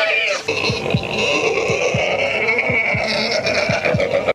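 A pig squealing in one long high-pitched cry while it is held down, over background music with low drum hits.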